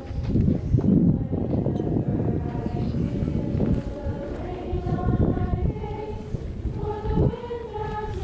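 A large crowd singing together in slow, held notes, with low gusty rumbles on the microphone that are loudest about a second in.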